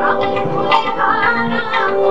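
A woman singing into a microphone over instrumental accompaniment. About halfway through she holds a wavering, ornamented note.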